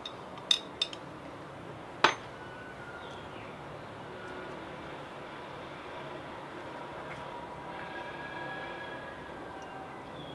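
Small plastic water-testing equipment, a pool tester, test tubes and a syringe, clicking as it is handled and set down on a table: two light clicks within the first second, then a sharper click about two seconds in, followed by a steady low background.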